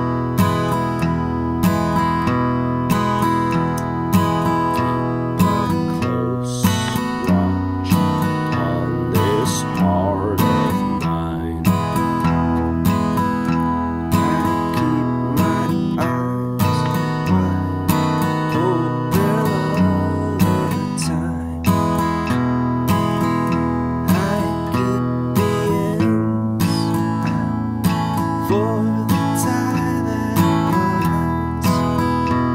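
Acoustic guitar played with a pick in a boom-chick pattern: a single bass note alternating with a strummed chord in a steady rhythm. It moves through the E, B7 and A chords of the song's first key.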